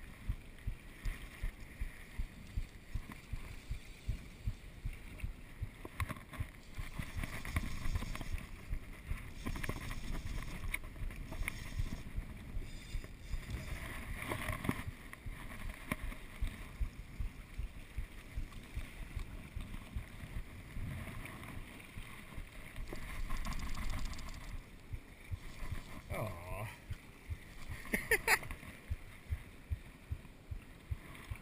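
Wind buffeting the microphone and water washing against the jetty rocks, in uneven gusts and low thumps.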